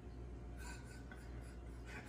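Quiet room tone: a steady low hum with a few faint small noises.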